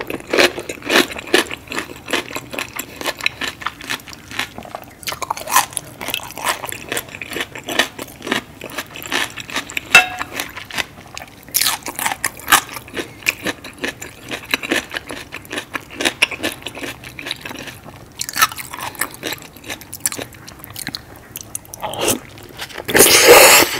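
Close-miked chewing of food soaked in seafood boil sauce: a steady run of small wet clicks and squishes, with a few louder bursts of biting near the middle and again toward the end.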